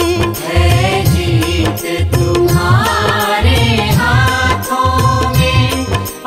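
Instrumental interlude of a Hindi devotional bhajan: an ornamented melody line that slides and wavers between held notes, over a steady low drum beat.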